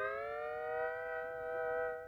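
Hawaiian-style guitar music: a sustained chord that slides up in pitch over about a second and is then held. It drops away in level at the very end.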